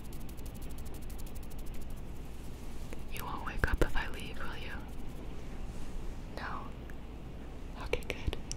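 A woman whispering close to the microphone, in a couple of short phrases about three seconds in and again briefly near six and a half seconds.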